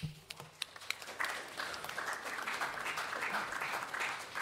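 Audience applauding. It starts as scattered claps and builds to full, steady applause about a second in.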